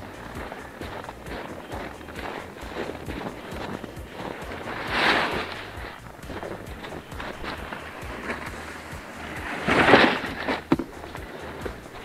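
Footsteps crunching through fresh snow on a forest path, with two louder swishing rustles about five and ten seconds in.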